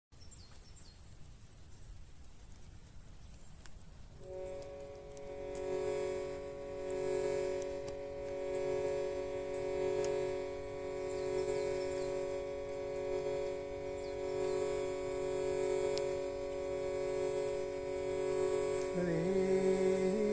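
Hand-pumped harmonium holding a steady drone chord that comes in about four seconds in, its level swelling and easing every couple of seconds. Faint bird chirps sound over the quiet outdoor background at the start, and a man's chanting voice joins near the end.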